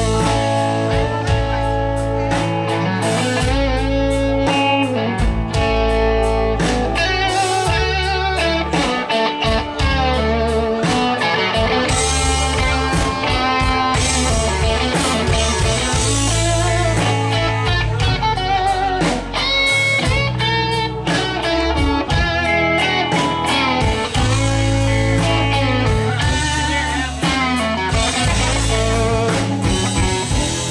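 Live rock band playing the instrumental opening of a slow song, electric guitar to the fore over bass, drums and keyboard.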